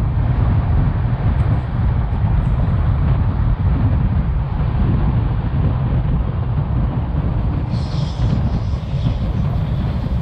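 Passenger train running at speed: a steady rumble of coach wheels on the track with rushing air. About eight seconds in a brief higher hiss rises over it.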